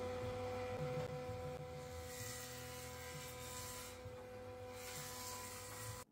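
Faint, steady hum made of several constant pitched tones over a low rumble, like a machine motor or electrical hum heard at low level.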